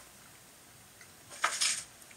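A man's short, noisy breath, about a second and a half in, as he is startled by his cat while swallowing a mouthful of banana.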